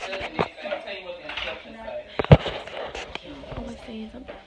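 A series of clattering knocks and clicks, the loudest a sharp knock a little over two seconds in, over faint background talk.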